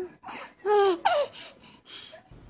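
Baby laughing in a string of short bursts, a couple of them falling in pitch.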